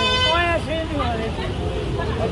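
Street traffic rumble with a short vehicle horn blast at the start, then people talking.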